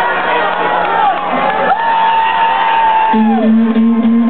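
Club crowd cheering and whooping, with long held tones over it that slide down at their ends. About three seconds in, the band starts a steady low sustained note.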